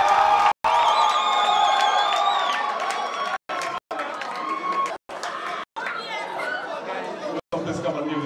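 Audience cheering and chattering after a winner is announced, with a long high whistle about a second in. The sound cuts out completely for brief moments several times.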